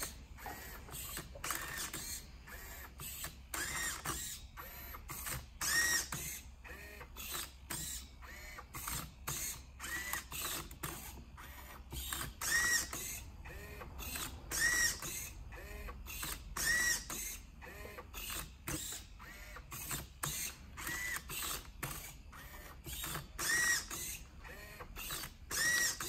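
Servo-driven grippers of a 3D-printed Otvinta Rubik's Cube solving robot gripping and turning the cube through its solving moves. It makes a quick series of short servo whirs and clicks, about two a second, many with a brief rising and falling whine.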